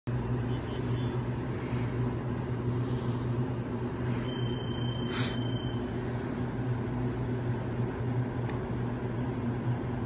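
Taiwan Railways EMU800 electric multiple unit standing at a platform, humming steadily at a low pitch. About four seconds in, a high steady beep sounds for about a second and a half, with a short burst of hiss in the middle of it.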